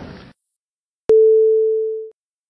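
A single steady electronic beep, one pure mid-pitched tone about a second long, starting with a click and fading away, set between stretches of dead silence. It is a marker tone at a splice in the recording, where the hearing's recess is cut out.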